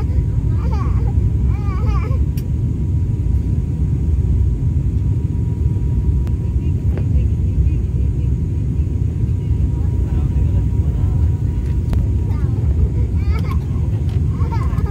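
Steady low roar of a turboprop airliner's cabin in flight, with a thin constant whine running through it.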